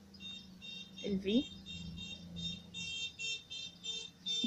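Rapid high-pitched beeping in the background, about four short beeps a second, growing louder toward the end. A brief voice sound comes about a second in, over a steady low hum.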